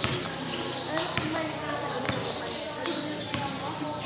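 Basketball bouncing on an outdoor concrete court, sharp irregularly spaced bounces, over the chatter and calls of the players and onlookers.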